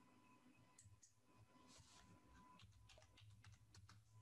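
Faint typing on a computer keyboard: scattered light key clicks that come quicker in the second half, over near silence.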